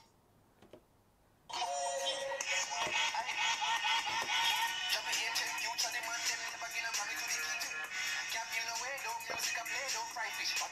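A song with vocals playing from a Sony Xperia XA Ultra smartphone's loudspeaker. It starts suddenly about a second and a half in, after a moment of near silence, and measures around 88 dB on a sound level meter held beside the phone.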